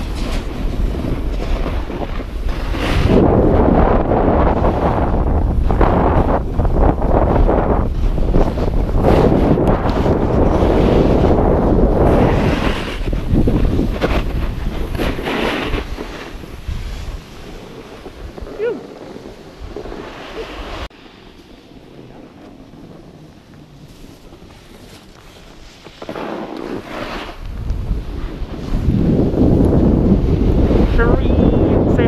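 Wind rushing over the microphone of a camera carried downhill by a snowboarder, mixed with the scrape of a snowboard edge over packed snow. It surges loud for the first half, falls much quieter for several seconds past the middle, then builds again near the end.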